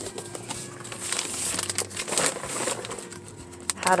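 Paper booklets and a plastic sleeve rustling and crinkling as they are handled and shifted, with scattered light clicks.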